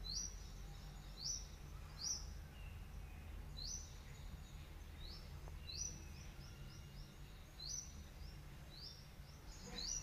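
A small bird chirping repeatedly: short high chirps that rise in pitch, about one a second, over a low steady hum.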